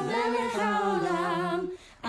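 A voice singing a slow, wordless melody: one long held phrase that fades out shortly before the end.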